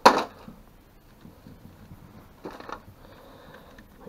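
Sharp knock of alternator parts handled on a workbench right at the start, then a softer clatter about two and a half seconds in.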